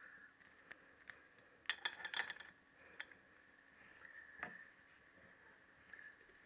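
Faint scattered clicks and light metallic taps of small valve parts being handled and seated on a motorcycle cylinder head, with a quick cluster of clicks about two seconds in.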